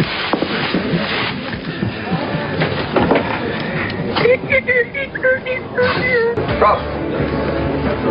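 Pub background: a murmur of many voices mixed with music, with a melody of held notes standing out from about four to six seconds in.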